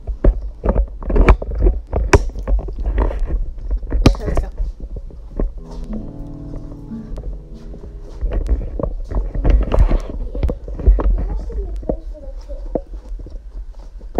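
Phone microphone handling noise while the camera is carried: repeated knocks and clicks over a low rumble. About six seconds in, a second or so of steady musical tones is heard.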